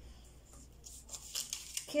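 Large sheet of paper being handled on a table: a few short rustles and crinkles in the second half.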